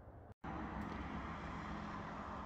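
Faint room tone, then about half a second in a steady running drone begins: the Austin 7's small side-valve four-cylinder engine idling evenly.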